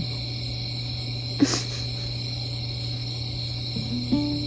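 Instrumental background music in a lull between plucked guitar phrases: a steady hum and hiss with one brief swish about a second and a half in.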